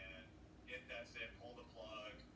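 Faint speech.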